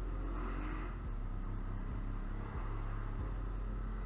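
ATV engine running under steady throttle while riding a rough trail, a loud low drone that shifts slightly in level a few times.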